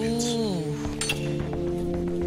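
Background music with held notes. About a second in, a single sharp clink of a metal fork against a china plate.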